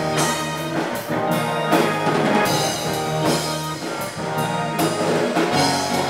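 A rock band playing live: electric guitars, bass guitar and a drum kit, the drums striking a steady beat.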